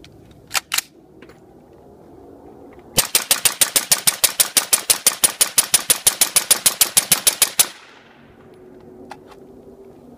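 Suppressed LWRC M6A2 5.56 rifle, gas block set to its suppressed setting and a Tac-Con 3MR trigger in its third (rapid-reset) mode, fired in an unbroken string of about thirty shots at roughly six a second for nearly five seconds, then stopping abruptly. Two sharp clicks from the rifle being handled come a few seconds before the string.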